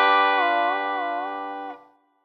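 Electric guitar chord on a B-bender-equipped Gibson Music City Jr ringing, with notes bent up and back down in pitch a few times by the B-bender while the rest of the chord holds steady; it is cut off shortly before the end.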